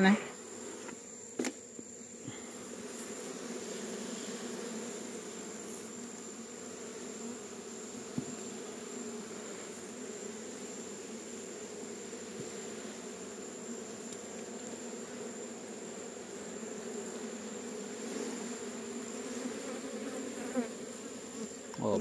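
Steady buzzing hum of a large honeybee colony on the open frames of a hive box, with a single sharp click about a second and a half in.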